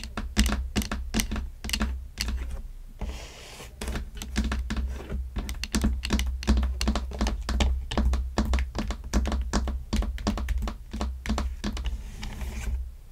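Long fingernails tapping rapidly on a toy's packaging box, its clear plastic window and cardboard, several sharp taps a second. There is a short soft rub about three seconds in before the tapping resumes.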